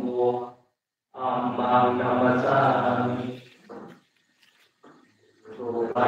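A group of Buddhist monks chanting Pali in unison on a near-level pitch. They break off briefly about half a second in, resume, then fall silent for about two seconds past the middle before starting again near the end.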